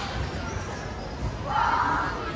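Busy gymnasium sounds: two dull, low thuds about a second apart, then a high voice calling out near the end over background chatter.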